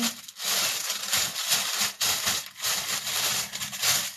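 Rustling of garments being handled, in several long swishes with short breaks between them.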